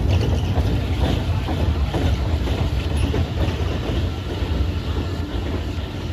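Steel family roller coaster train running along its track, a steady rumble of wheels on rails with some clatter.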